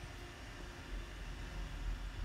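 Faint steady hiss with a low hum underneath: background room tone and microphone noise, with no distinct sound event.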